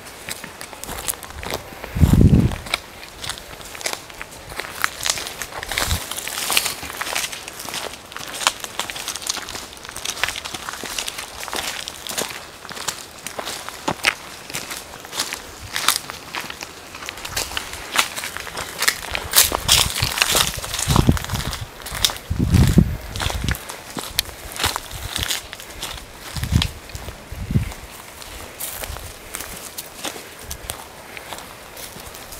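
Footsteps crunching through dry leaf litter, twigs and grass on a forest floor, with constant small crackles and a few dull thumps, one about two seconds in and several in the last third.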